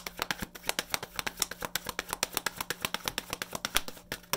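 A deck of tarot cards being shuffled by hand: a rapid run of crisp card-on-card clicks, about eight a second, stopping just before the end.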